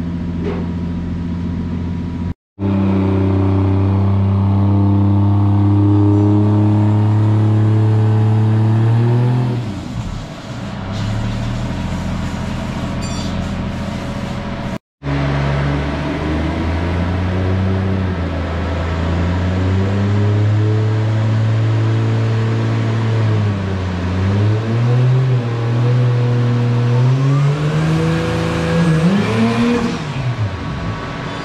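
Toyota Mark II JZX100's turbocharged 1JZ-GTE VVT-i inline-six, with a muffler delete, running on a chassis dyno. The engine is held at a steady speed for several seconds, then eases off and wavers, and its pitch climbs near the end. The sound cuts out briefly twice.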